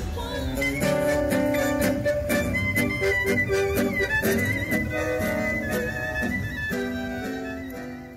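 Bandoneon and acoustic guitar playing Argentine tango: sustained reedy melody notes and chords over guitar accompaniment.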